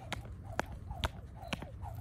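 Jump rope slapping the ground on each turn, with sneakers landing on the mat, making sharp slaps about two a second during side-to-side scissor steps.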